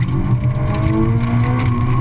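Honda S2000's four-cylinder engine accelerating hard, its revs climbing steadily.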